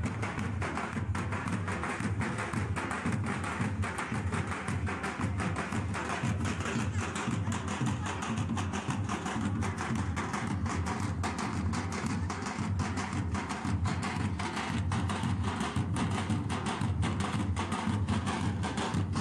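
Several drums beaten with sticks by a group of drummers, playing a fast, unbroken rhythm.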